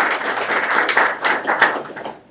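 Audience applauding: many hands clapping together in a dense patter that fades out near the end.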